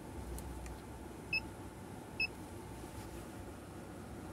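Two short, high electronic beeps about a second apart from an OBD-II connector pin-check tester, sounding as it steps through the connector pins, over a low steady hum.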